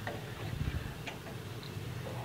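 Wooden spatula stirring gravy in a nonstick frying pan: a few faint taps and scrapes against the pan over a low steady hum.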